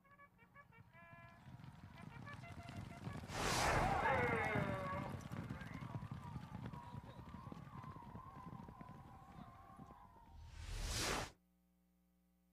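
Sound effects for an animated race graphic: a whoosh about three seconds in, then a horse whinnying over a low drumming of hooves, and a second whoosh before it cuts off suddenly near the end.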